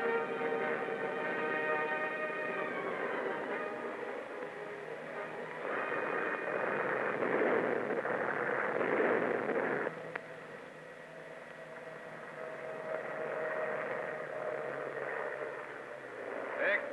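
Old newsreel soundtrack: sustained chord-like tones at first, then a louder, dense noisy passage that stops abruptly about ten seconds in, followed by a quieter steady tone.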